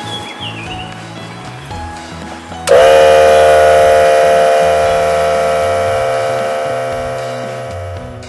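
Background music, and about three seconds in a Tool Shop 2-gallon, 1/3 HP electric air compressor starts up with a sudden, loud, harsh mechanical drone while it pumps air into a motorhome tyre. The drone then fades steadily away.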